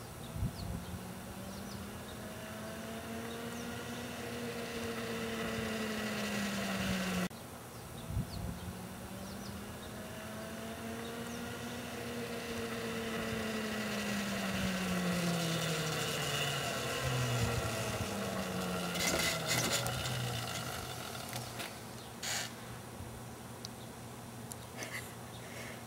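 Homemade electric bobber motorcycle riding, its chain drive and sprockets whining with no engine sound. The whine rises in pitch as the bike speeds up and falls as it slows. This happens twice, with a sudden break about seven seconds in, and a few sharp clicks come near the end.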